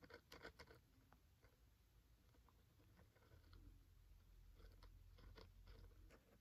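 Near silence: room tone with a few faint ticks in the first second and a soft, faint rustle later on.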